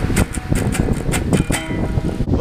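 Acoustic guitar strummed by hand in quick, even strokes, about four a second.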